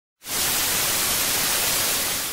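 Analogue TV static hiss: an even rush of white noise that starts a moment in and holds steady.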